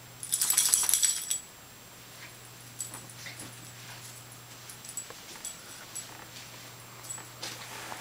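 A small dog's collar tags jingling: a loud burst of jingling about half a second in, lasting about a second, then lighter scattered jingles and scuffs as the dog bites and tugs at a fabric dog bed.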